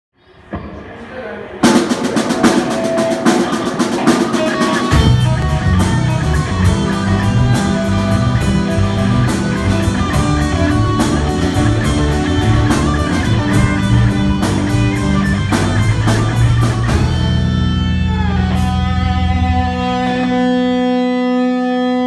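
Live rock band playing an instrumental intro on electric guitars, bass and drum kit. The drums come in about a second and a half in, the bass a few seconds later, and near the end the band holds a ringing chord.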